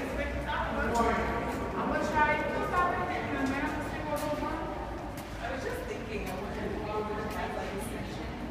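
Indistinct chatter of several people walking through a long pedestrian tunnel, with light footstep clicks.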